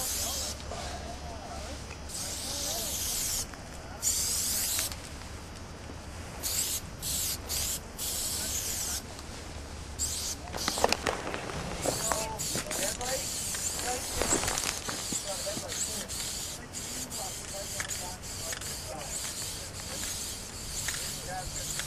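Aerosol spray-paint can spraying in repeated bursts of hiss, some brief and some over a second long, running more continuously in the second half.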